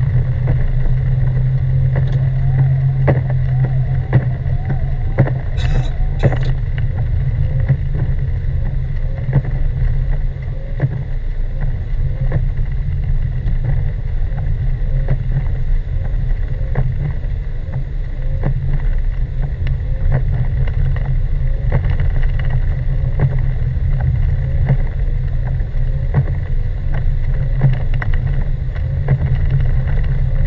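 Car driving on a snow-covered road, heard from inside the cabin: a steady low rumble of engine and tyres, with a few sharp clicks about six seconds in.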